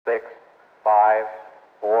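Speech only: three short phrases of a thin, narrow-band radio voice, space shuttle launch-control communications.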